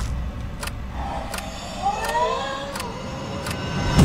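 Kodak Carousel Custom 840H slide projector clicking as it advances slides, about five clicks evenly spaced less than a second apart, over a steady low hum.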